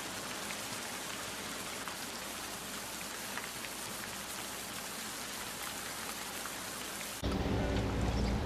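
A steady, even hiss with no pitch or rhythm. It starts and stops abruptly, cutting off about seven seconds in.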